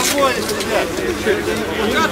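Footballers' voices talking and calling out across the pitch, the words unclear, with a single sharp knock right at the start.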